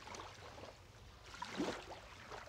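Small waves lapping softly against a pier, with one brief louder slosh about a second and a half in.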